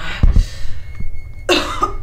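A woman coughing and choking: a short cough just after the start, then a louder, harsher cough about a second and a half in, with a couple of low thuds near the start.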